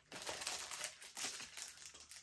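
Soft, intermittent rustling and crinkling of paper and packaging as a budget binder is opened and the sheets inside are handled.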